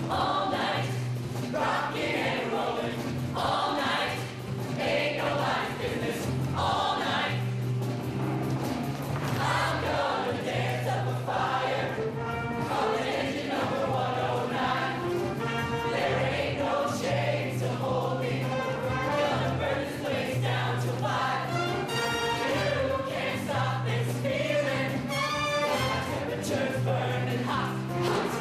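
Mixed-voice show choir singing an upbeat number in full chorus over an accompaniment with a repeating bass note.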